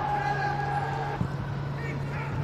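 Football match ambience on a broadcast: a steady low hum under the general noise of the ground, with a single knock about a second in, likely the ball being struck, and a brief call near the end.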